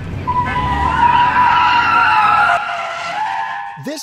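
A car's tyres squealing as it spins and drifts, a wavering high squeal over engine noise. The engine noise drops away past the middle and the squeal fades near the end.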